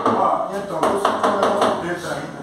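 Men's voices talking indistinctly, with a few light taps.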